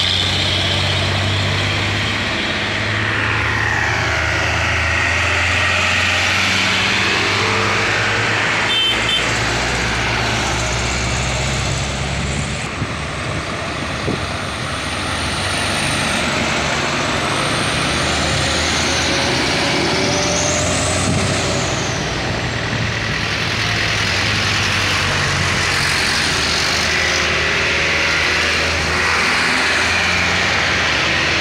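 A line of sugarcane-laden diesel trucks passing close by one after another, their engines pulling under load with steady tyre and road noise. The sound is loud and continuous, easing slightly about halfway through before the next trucks come by.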